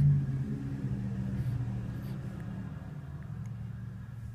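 A low, steady hum with a rumble under it, loudest for a moment at the very start.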